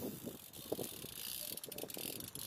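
BMX bike rolling past over brick paving, its tyres hissing on the pavers and its rear hub ticking rapidly as it freewheels, the ticks clearest in the second half.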